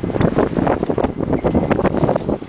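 Wind buffeting the microphone, a loud, uneven rumbling roar, on a small sailboat sailing close-hauled into the breeze.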